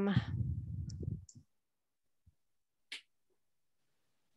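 A woman's drawn-out "um" trailing off over the first second, then near quiet broken by two faint clicks, a tiny one a little after two seconds and a sharper one near three seconds.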